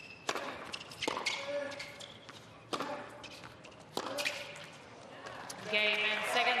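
Tennis rally: a ball struck back and forth with rackets, four or five sharp hits a second or so apart. Crowd applause rises near the end as the point is won.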